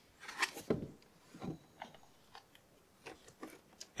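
A scatter of small clicks and knocks from a plastic jug of power steering fluid being handled and its screw cap turned back on.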